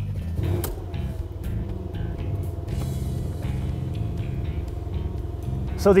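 Electro-hydraulic drive of a Mercedes-AMG C63 S Cabriolet's folding fabric roof running as the top opens: a steady hum with a few held tones, over the low, even running of the car's twin-turbo V8 at idle.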